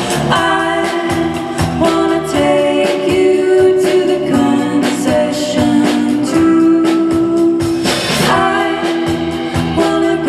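A live rock band playing: sung vocals over electric guitar, electric bass and a steady drum beat.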